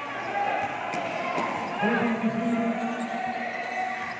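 Basketball dribbled on the court during play, amid hall noise, with a voice calling out a long held cry from about two seconds in.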